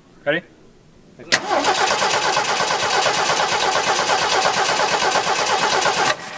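A 1977 Jeep CJ's carbureted engine fires up suddenly about a second in, then runs loudly and steadily.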